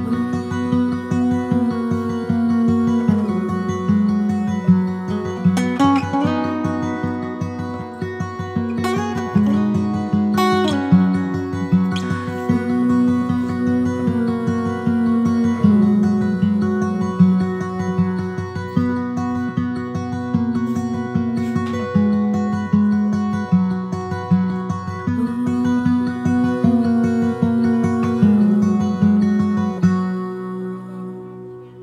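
Instrumental background music: a steady stream of quick repeated notes over held pitched tones.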